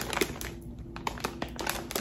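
Soft crinkling and a few light clicks as a jar of sauce is handled and settled on a slow cooker's lid among crinkle-paper basket filler.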